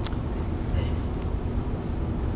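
Room tone in a lecture hall: a steady low rumble, with one faint click just after the start.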